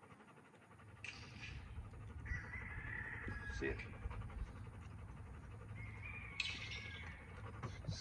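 Two distant drawn-out calls, one about two seconds in and another near the end, over a steady low wind rumble, with a single spoken sit command in between.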